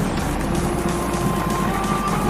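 Background music with held notes that step up in pitch, over the steady road rumble of a moving vehicle.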